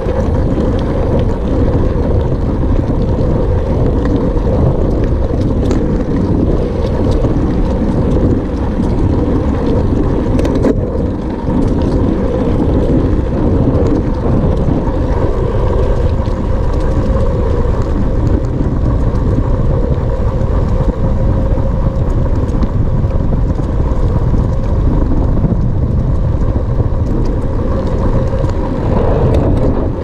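Steady rushing noise of wind buffeting a handlebar-mounted microphone, mixed with the rolling noise of a hybrid bicycle's 26 x 2.0 in tyres on a paved path, as the bike is ridden along at an even pace.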